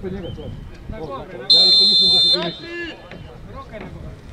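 Referee's whistle blown once, a loud shrill blast of just under a second, signalling a free kick to be taken. Players shout before and after it.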